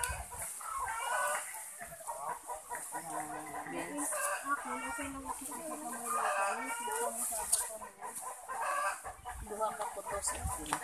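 Chickens clucking in repeated short calls, with a rooster crowing.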